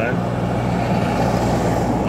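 A heavy flatbed truck driving past close by, its engine and road noise heard from inside a car over the car's own steady engine hum.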